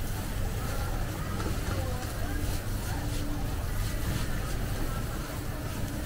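Busy street-stall ambience: a steady low rumble with background voices, and a ladle scraping against a pot as it stirs rice.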